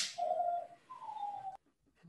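A bird-like whistled call in two clear notes: a steady note lasting about a second, then a shorter note sliding down in pitch. A short sharp click comes right at the start.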